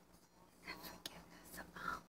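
A woman's soft, whispered speech, too faint for words to be made out, with a single sharp click about a second in.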